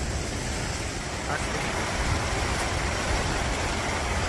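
Steady rush of flowing water, with a low rumble beneath.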